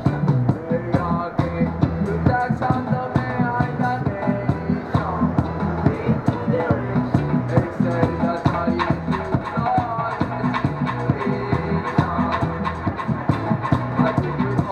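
Live reggae band playing: drums struck with sticks on a steady beat, with keyboard and a low bass line.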